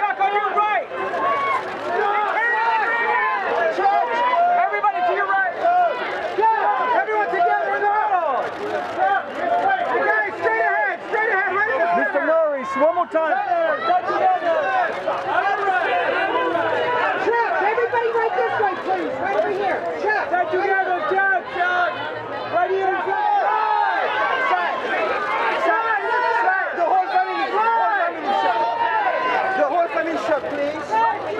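A crowd of many voices calling out and talking over one another, continuous and fairly loud, with no single voice standing clear.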